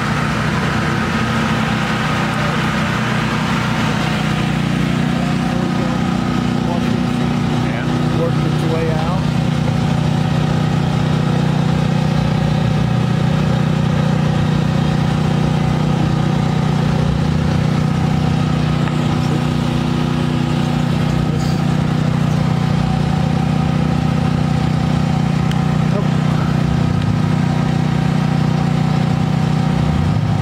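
An engine running steadily at idle close by, its note unchanging, with indistinct voices over it.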